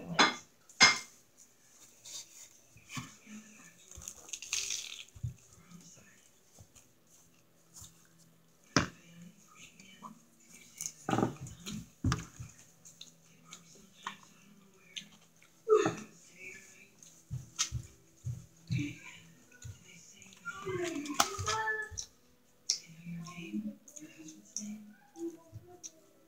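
Close-up eating sounds from a woman biting into and chewing a soft sub roll with vegetables: irregular wet chewing, mouth clicks and lip smacks. A few short bursts of voice come in partway through.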